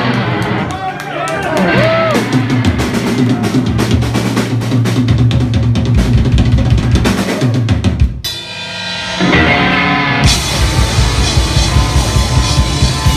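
Rock band playing live, with a drum kit pounding bass and snare under electric guitars and bass guitar. About eight seconds in the drums drop out for a moment, leaving a thinner held sound, then the full band crashes back in.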